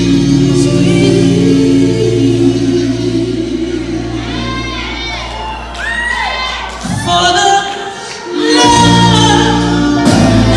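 Live soul music: a male lead singer's voice gliding through a vocal run over a band of keyboards, bass and drums. The band falls away about 7 seconds in and comes back in about a second and a half later.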